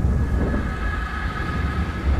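A deep, steady low rumble of ominous sound-design drone, with faint high steady tones joining about halfway through.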